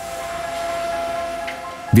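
A held chord of several steady tones from a film score, swelling in and fading slightly before a voice begins near the end.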